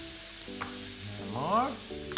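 Green-lipped mussels sizzling in a hot frying pan as they begin to steam open in their own juices. A short rising tone comes about one and a half seconds in.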